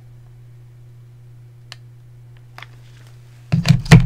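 A steady low hum with a couple of faint clicks, then a quick cluster of loud knocks and taps near the end as small craft tools are handled on the desk.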